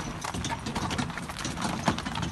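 Hooves of a pair of harnessed carriage horses clip-clopping on a gravel track, an irregular run of knocks with one louder strike near the end.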